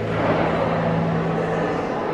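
Steady indoor background noise: a low, even hum under a continuous wash of noise, with no sudden sounds.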